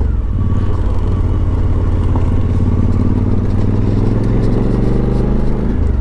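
Motorcycle engine running at a steady cruise, its note holding level with a slight slow rise in pitch, over the crunch and rattle of tyres on a gravel road.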